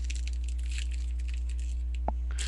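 Steady low hum throughout, with faint rustling of a foil trading-card pack and cards being handled.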